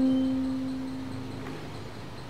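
Background music: a single plucked string note rings out and fades away over about a second and a half, leaving a short pause in the music.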